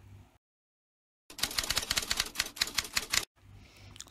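Typewriter-style typing sound effect: after a brief silence, a rapid run of sharp clicks, about ten a second, lasting about two seconds.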